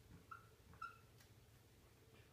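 Dry-erase marker squeaking faintly on a whiteboard as it writes: two brief high squeaks about half a second apart, otherwise near silence.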